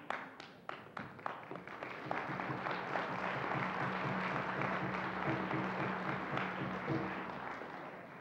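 A frame drum struck in evenly spaced beats, about three a second, then fast drumming under a swell of audience applause. The applause fades near the end.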